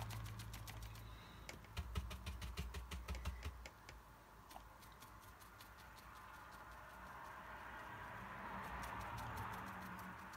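Paintbrush dabbing and stippling on watercolour paper: a fast, irregular run of light taps, busiest in the first few seconds, over a faint low hum.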